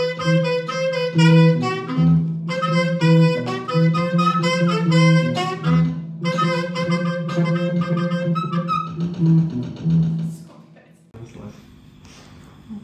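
A saxophone playing a melody over an electronic keyboard and a bass guitar, a small band jamming together. The music stops about a second before the end.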